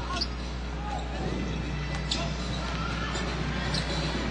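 Steady arena crowd noise during a live basketball game, with the ball bouncing on the hardwood court and a few brief sharp high sounds.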